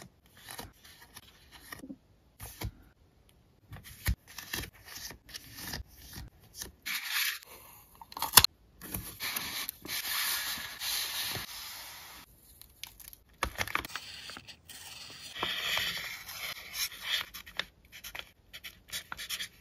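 Close-up paper handling: sticker sheets being shuffled and slid into a paper sleeve. Soft rustling and brushing strokes are broken by light clicks and taps, with the longest slide about ten seconds in.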